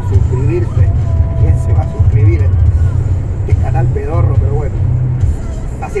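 Truck engine and road noise droning low and steady inside the cab while driving on the highway, with quieter speech and music in the background.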